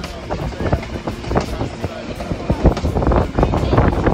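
Moving passenger train heard from inside the carriage: a steady low rumble of running gear with irregular clatter and knocks from the wheels and coach.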